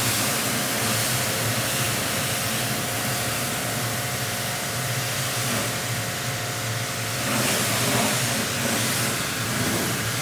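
Pressure washer spraying a car's body: a steady hiss from the water jet over the constant hum of the machine running.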